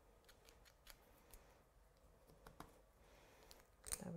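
Near silence with room tone, broken by a few faint light clicks and taps from handling craft tools on the work mat, and one sharper tap just before the end.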